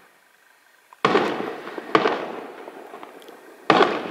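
Aerial firework shells bursting: a sudden bang about a second in, another about a second later with crackling that fades away, then a third bang near the end.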